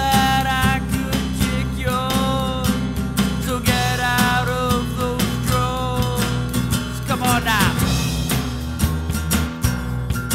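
Rock song passage between sung lines: drums, bass and guitar, with a melodic line of held, bending notes over the steady beat and a quick rising slide about seven seconds in.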